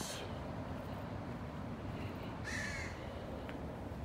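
An American crow caws once, about two and a half seconds in, over a steady low outdoor background hum.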